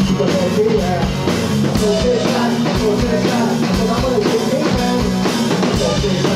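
Rock band playing live at full volume: drum kit keeping a steady beat under electric guitar.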